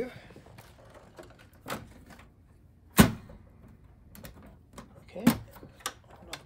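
A few clicks and knocks of metal parts being handled in an open Power Mac G4 tower case. The loudest is a single sharp knock about halfway through, with another knock about a second before the end.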